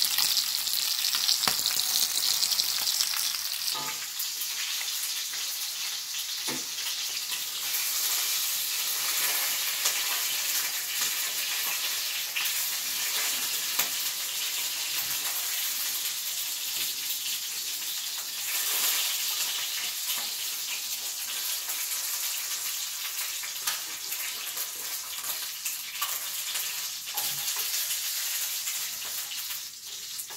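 Broiler chicken pieces shallow-frying and browning in a little oil in a stainless steel pan, a steady sizzle. A few sharp clicks come as a utensil knocks against the pan while the pieces are turned.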